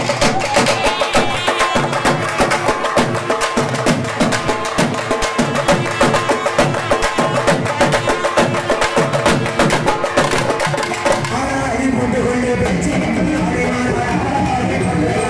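Tamil temple folk band playing: fast, dense drumming on hand-held drums, with a wind instrument playing the melody over it. About eleven seconds in the drumming stops and the wind instrument carries on.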